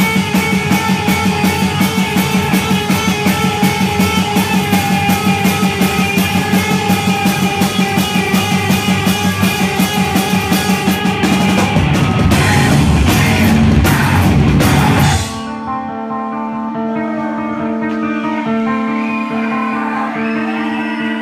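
Live heavy rock band of guitar, bass and drums playing a fast, pulsing, driving part that builds to a louder crashing climax, then stops abruptly about fifteen seconds in, leaving amplified notes ringing on.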